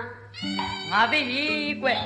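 A high, wavering cry starts about a third of a second in and lasts about half a second. Speech follows, over background music with steady sustained tones.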